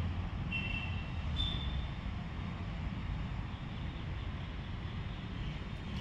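Outdoor background noise: a steady low rumble, with a few short, high chirps in the first two seconds.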